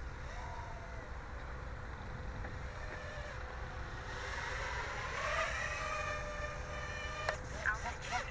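Small quadcopter's brushless motors whining faintly in flight, their pitch rising about halfway through and then settling as the quad surges in barometer altitude-hold mode.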